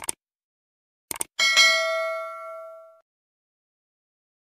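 Subscribe-button animation sound effect: a mouse click, then two or three quick clicks about a second in, followed by a notification-bell ding that rings and fades over about a second and a half.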